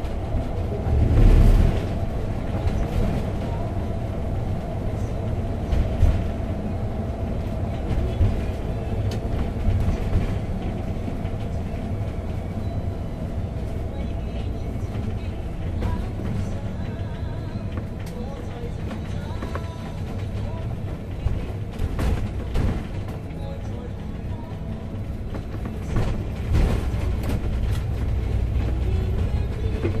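Steady low drone of engine and road noise inside a vehicle's cab at highway speed, with a faint steady hum and occasional short knocks and clicks.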